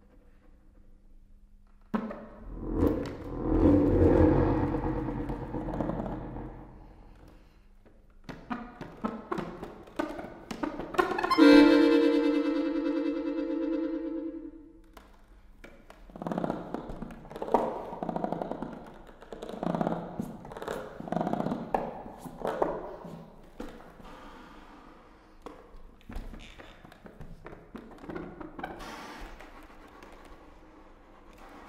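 Solo accordion playing contemporary music with extended techniques. After a faint held tone, a loud noisy swell rises and falls. Scattered clicks follow, then a loud sustained chord that fades over about three seconds, then a run of short pulsed chords and quieter clicks near the end.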